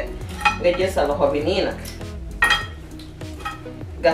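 Gloved hands working seasoning paste into raw fish pieces in a pan. The handling noise includes a sharp clink against the pan about two and a half seconds in, heard over quiet background music.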